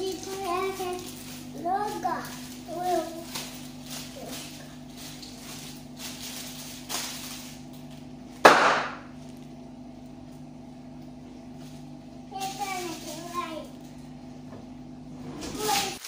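A small child's voice in short calls, then about halfway one loud, sharp pop as a small plastic bag is smacked by hand. A steady low hum runs underneath.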